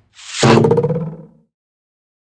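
Video transition sound effect: a short swoosh sweeping down in pitch into a buzzy tone that fades out after about a second.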